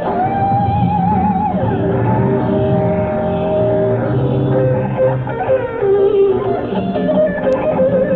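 Live rock band playing, led by an electric guitar holding sustained notes with vibrato and a falling slide about a second and a half in, over bass guitar and drums.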